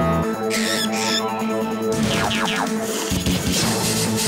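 Cartoon background music with steady electronic notes. Over it come cartoon sound effects: two short, high, wavering cries about half a second apart early on, then a quick run of falling whistle-like sounds with a rushing noise from about two seconds in.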